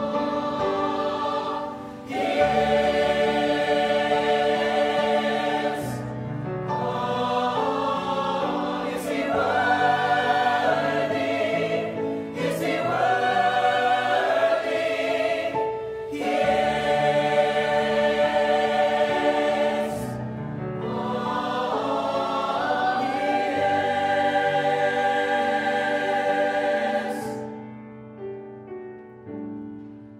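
A choir singing a slow piece in long held chords. The phrases run about four seconds each, with brief breaks for breath between them, and the last chord dies away near the end.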